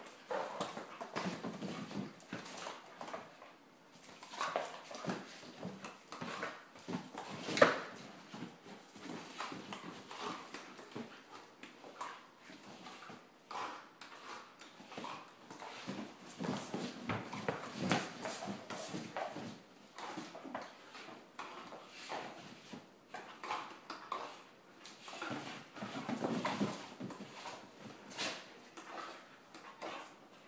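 Two Dobermans play-fighting, their noises coming in irregular bursts, with one sharp, much louder sound about a quarter of the way in.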